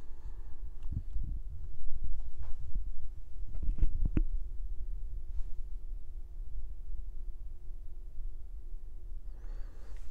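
Low steady rumble with a few knocks about one to four seconds in, ending in a sharp metallic clank just after four seconds: a plate-loaded incline chest press machine at the end of a set.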